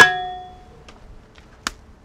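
A stainless steel stand-mixer bowl is struck once with a sharp metallic clang and rings briefly before dying away. A single short knock follows about a second and a half later.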